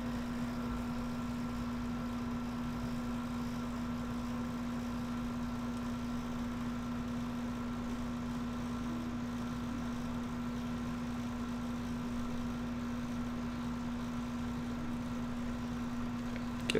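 Steady background hum with one constant low tone and fainter higher tones, unchanging and with no separate events.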